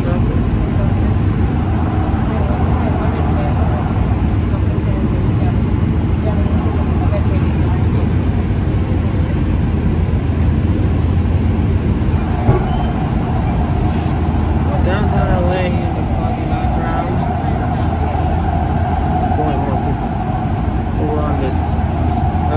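Cabin noise of a P3010 light-rail car running at speed: a steady rumble of wheels and running gear. A steady hum joins about halfway through.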